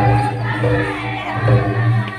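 Adivasi Karam folk dance music: singing over a steady low drum beat, with crowd noise.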